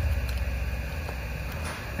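Steady low hum of a running variable frequency drive set to 60 Hz, being used as a single- to three-phase converter.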